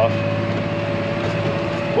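Tractor engine running steadily, heard from inside the cab, with a low hum and a thin steady whine over it.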